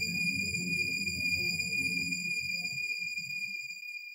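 Background music: a low, ambient underscore with a steady high ringing tone held above it, fading out near the end.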